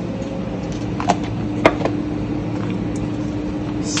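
Steady hum of commercial kitchen machinery with a low drone, broken by two or three light clicks about a second and a second and a half in as food is handled over a stainless steel bowl.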